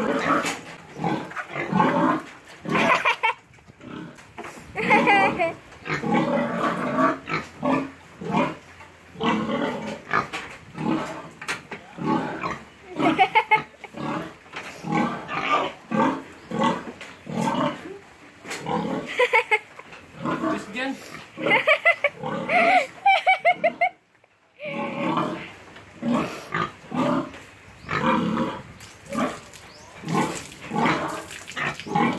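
A pig grunting and squealing in rapid, repeated bursts, some rising into higher squeals, with a brief pause near the end.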